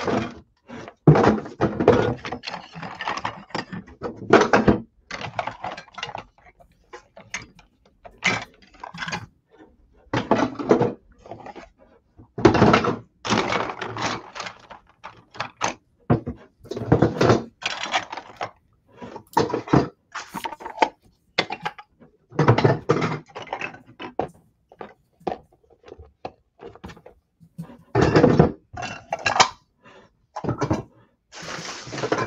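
Plastic toy dishes, cups and play food clattering and knocking together as they are picked up by the handful. The knocks and rattles come in irregular clusters with short pauses between.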